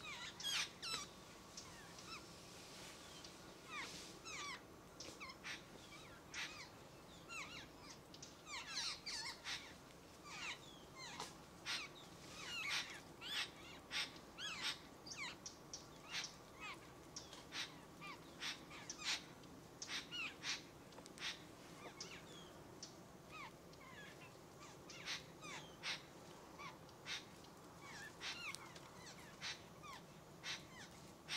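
Birds calling: a busy run of short, high chirps and squeaky notes, some sliding in pitch, thickest through the middle of the stretch.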